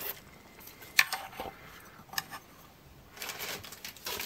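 A plastic MRE spoon being set down on a plastic meal tray: a few light clicks and taps, the loudest about a second in, with a soft handling rustle near the end.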